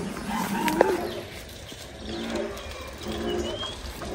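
Birds calling: a low cooing call comes three times, about a second apart, with a brief high chirp near the end.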